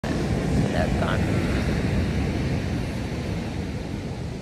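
Wind buffeting the phone microphone: a steady, uneven low rumble, with faint voices briefly about a second in.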